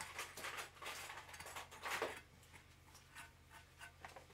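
Scissors snipping through two layers of fabric wrapped on a tumbler: a quick run of faint cuts over the first two seconds, then quieter.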